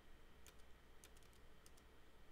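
Faint clicks of computer keyboard keys, about half a dozen spread through the second half, over near-silent room tone.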